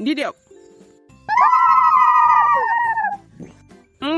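A long howl, about two seconds, starting a little over a second in and sliding slightly down in pitch before it stops, over faint background music.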